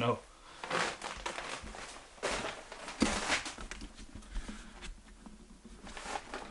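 Footsteps scuffing and crunching over a debris-strewn floor, with rustling, in a few short separate bursts. The loudest come about two and three seconds in.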